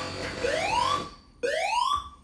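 Building fire alarm sounding its evacuation tone: a rising whoop, each sweep climbing in pitch over about half a second, repeating about once a second.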